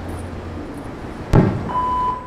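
Telephone voicemail line played over a loudspeaker: a hissy line with a low hum, a sharp click about a second and a half in, then a steady single-pitch voicemail beep starting near the end.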